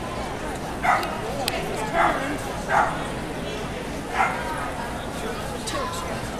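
A dog barking in short, sharp yaps, four times at roughly one-second intervals, over the murmur of voices in a hall.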